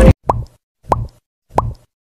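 The music cuts off right at the start, followed by three short rising 'plop' sound effects, evenly spaced about two-thirds of a second apart, with silence between them.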